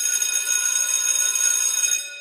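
Alarm-clock ringing sound effect marking the end of a countdown timer. It sets in suddenly, holds steady for about two seconds, then fades away.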